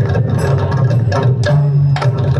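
Mridangam played with the bare hands in a fast run of crisp strokes, about five or six a second, in South Indian classical style.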